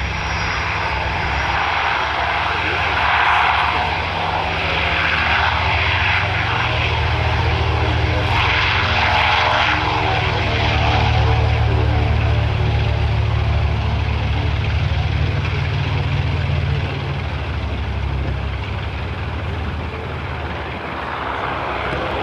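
North American B-25 Mitchell's twin Wright R-2600 radial engines at takeoff power as the bomber rolls down the runway, a steady deep drone that swells a little as it passes near the middle.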